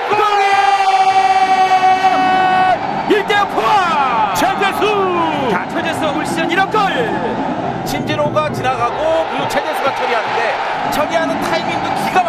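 A broadcast commentator's long, high-pitched shout celebrating a goal, held for about three seconds. After it comes excited commentary over a stadium crowd cheering.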